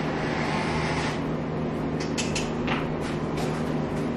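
A skid steer loader's engine running steadily at idle, a constant low hum. A few short clacks and knocks come through about halfway through.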